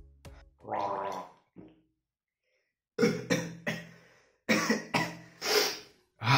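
A young man's voice in a string of short, loud vocal outbursts starting about halfway through, after a brief pitched sound and a moment of silence.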